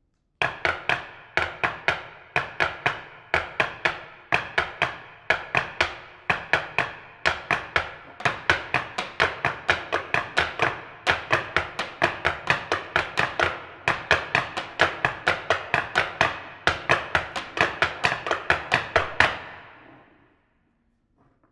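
Percussion ensemble playing sharp struck strokes, about four a second, in repeating groups that each start loud and fall away. It begins suddenly out of silence about half a second in and stops just before the end.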